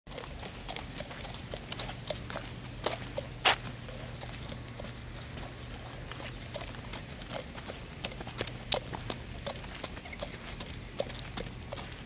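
Hooves of a horse led at a walk on wet pavement: a string of irregular clops, the loudest about three and a half seconds in, over a faint steady low hum.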